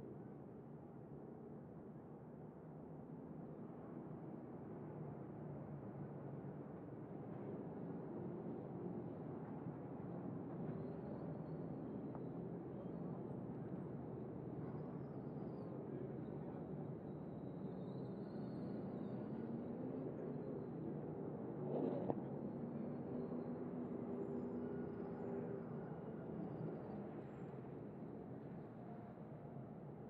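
Onboard audio of a NASCAR Craftsman Truck Series race truck's V8 engine running, its note rising and falling slowly as the truck is driven through the corners, with one sharp click about two-thirds of the way through.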